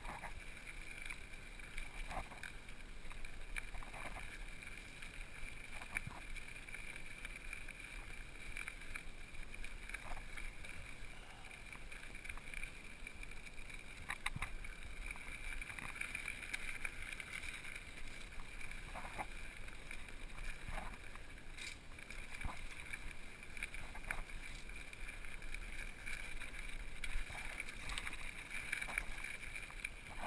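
Mountain bike riding down a rough dirt trail: a steady rushing noise from the tyres and air, broken every second or two by short knocks and rattles as the bike goes over rocks and roots.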